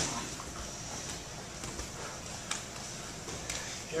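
Faint rustle of cotton gis and bodies shifting on a foam mat, with a few soft taps, as two grapplers reset from an armbar back into the mount position.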